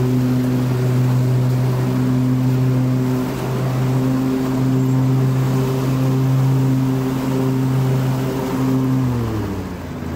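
Gasoline lawn mower engine running at a steady speed, its pitch dropping near the end as the engine slows.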